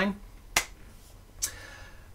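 Two short, sharp clicks about a second apart over quiet room tone.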